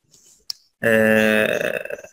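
A man's drawn-out hesitation sound, a steady 'eeh' held at one pitch for about a second, preceded by a faint breath and a short click.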